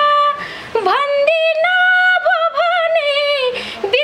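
A woman singing a Nepali dohori folk line in a high voice, holding long notes ornamented with quick pitch bends, with short breaks for breath about half a second in and near the end.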